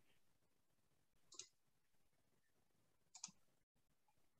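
Near silence, broken by two faint short clicks, one about a second and a half in and another a little after three seconds.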